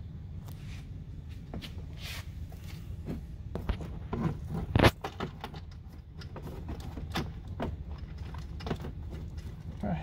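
Small clicks and knocks of a screw, washers and spacer against a mud flap as it is held to the fender liner and the screw hand-started, with one louder knock about five seconds in. A steady low hum runs underneath.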